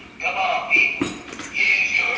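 A tinny recorded man's voice played through a small speaker when the bobblehead's sound button is pressed, the sound thin and coming in short halting stretches.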